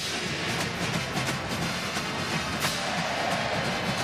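College marching band playing brass and drums over a cheering stadium crowd.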